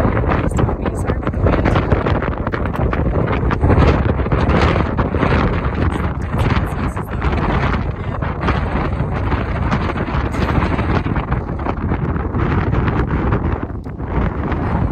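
Strong wind buffeting the phone's microphone: a loud, unbroken rumble of wind noise.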